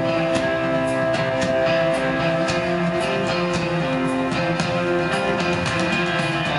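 Live rock band playing an instrumental passage: held electric guitar and bass notes over a steady drum beat, with no vocals.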